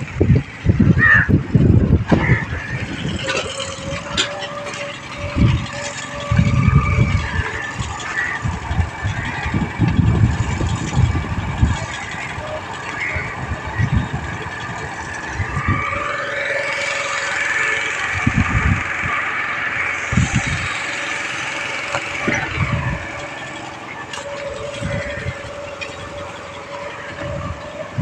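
A small motorboat's engine running steadily over open water; its pitch climbs about halfway through and eases back a few seconds later. Irregular low rumbles come and go in the first half.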